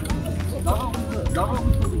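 Chair-type ice sled with metal runners sliding and scraping over lake ice, while the pointed push-poles knock against the ice in an uneven rhythm.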